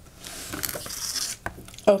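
A silicone resin mould being handled and slid across a plastic cutting mat: about a second of scraping rustle, then a light click.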